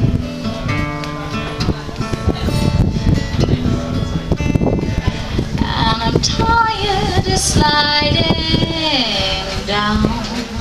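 Live acoustic guitar played as an instrumental passage, then about six seconds in a woman's voice comes in over it, singing a long wavering line that slides downward near the end.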